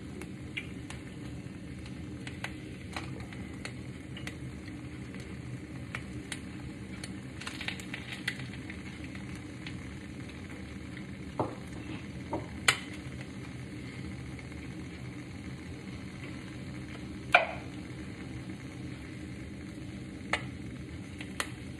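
An egg frying in a non-stick pan, a steady sizzle. Small clicks are scattered through it, with two sharper knocks, one a little past halfway and one near the end.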